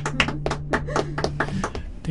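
Acoustic guitar strummed in quick, sharp strokes over a held low note, the playing stopping about one and a half seconds in as a live song ends.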